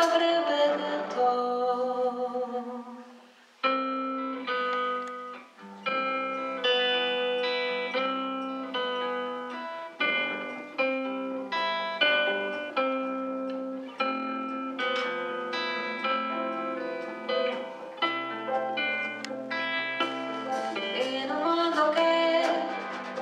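A female singer ends a sung phrase. After a short near-silent break about four seconds in, a guitar plays an instrumental passage of single plucked notes with double bass underneath.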